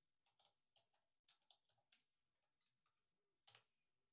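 Very faint computer keyboard keystrokes: a scatter of irregular soft clicks against near silence, with one slightly louder click near the end.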